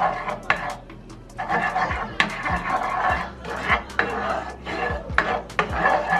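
A cooking spoon stirring a thin, creamy sauce in a nonstick pan, with irregular knocks and scrapes against the pan's bottom and sides.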